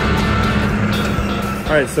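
Background music over a Gehl telehandler's engine running steadily. A man's voice begins just before the end.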